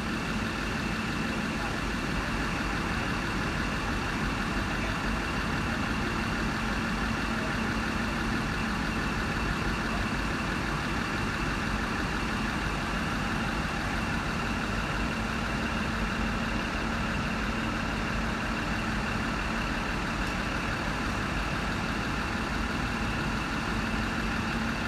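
Diesel engine of a heritage rail motor idling while the railcar stands still: a steady hum with one held low tone and no change in speed.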